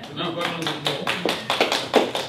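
A man's low voice, not clearly worded, over a quick, uneven run of taps and knocks, several a second.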